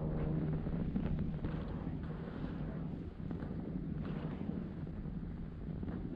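Wind blowing across an action camera's microphone: a steady low rumble.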